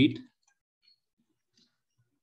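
The tail of a spoken word, then a few faint, short keyboard keystrokes as a word is typed on a computer.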